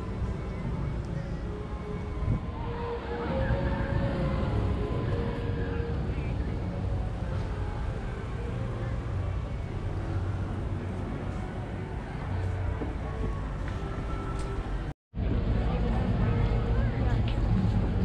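Outdoor crowd ambience: scattered voices of other people in the background over a steady low rumble. The sound cuts out completely for a moment about three seconds before the end.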